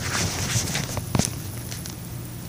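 A person's footsteps on a floor, with two louder thuds about a second apart.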